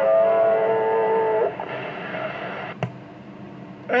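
A steady, buzzy tone comes over the CB radio's speaker at the end of a distant station's transmission and cuts off abruptly after about a second and a half. Faint band hiss follows, with a single sharp click shortly before the end.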